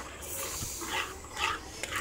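A spatula stirring grated beetroot and coconut paste in a pan, a soft scraping hiss. Two faint, brief sounds come about a second and a second and a half in.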